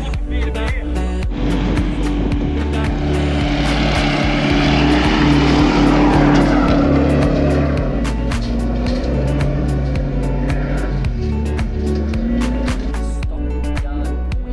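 A four-wheel drive's engine labouring hard as it climbs a soft sand track, swelling to its loudest about halfway through and then fading, under background music with a steady beat.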